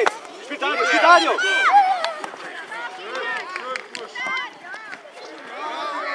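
Many overlapping short, high-pitched shouts and calls from young children playing football, mixed with lower adult voices calling from the sideline, and a few short sharp knocks.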